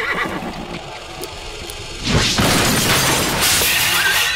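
A horse whinnying, its call tailing off in the first moments. About two seconds in, a loud rush of noise lasts nearly two seconds.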